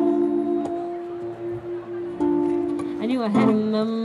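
A woman busker singing into a microphone and accompanying herself on guitar. The first two seconds are long held notes, and from about three seconds in her voice bends and wavers through the melody.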